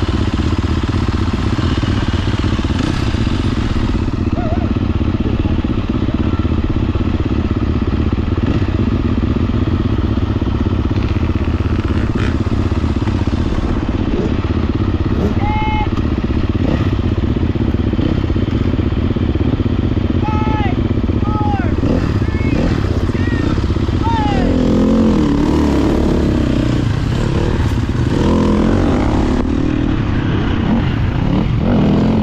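Enduro dirt bike engine idling steadily, then revving and pulling away near the end as the bike sets off down the trail.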